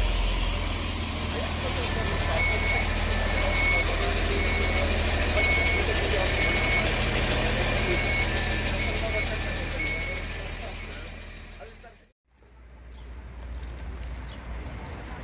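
Diesel railcar idling at a platform with a steady low drone. A two-tone electronic beep repeats about once a second over it, and voices can be heard beneath. Just after twelve seconds the sound fades and cuts off abruptly, and quieter street ambience follows.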